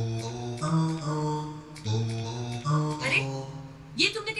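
A slow run of held electronic notes, played one key at a time on a computer keyboard that sounds musical tones. Each note steps to a new pitch, with a short drop-out a little before two seconds in.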